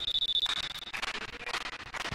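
Volleyball referee's whistle: one steady high blast about a second long, the signal to serve.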